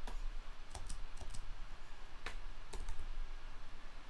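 A handful of sharp, scattered clicks from a computer keyboard and mouse being operated, over a low steady hum.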